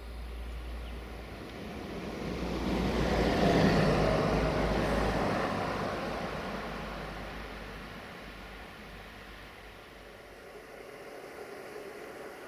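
A vehicle passing by, its noise swelling to a peak about four seconds in and then fading away.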